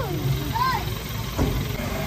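A child's short, high-pitched vocal sound over a steady low hum, with a single knock in the second half.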